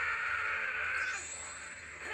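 An anime sound effect from the episode playing: a sustained, wavering noise lasting a little over a second, then a higher-pitched rush takes over.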